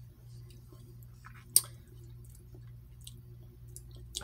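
Faint mouth sounds of someone tasting yogurt, with small scattered clicks and one sharp click about a second and a half in, over a steady low hum.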